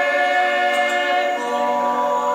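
Music: voices singing long held notes in a chord, the chord shifting about a second and a half in.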